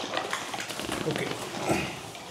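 Thick, wet mud squelching in a run of small sticky clicks as a hand squeezes it against a plastic foil liner in a mud bath.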